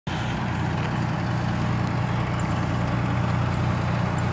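Fire truck's engine idling, a steady low drone.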